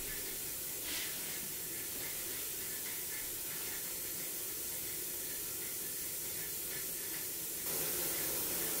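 Steam radiator hissing steadily, a constant hiss that gets slightly brighter near the end.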